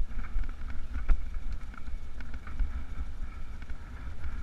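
Wind buffeting a moving camera's microphone, a steady low rumble, with scattered clicks and rattles from travelling over a rough stony track and one sharper knock about a second in.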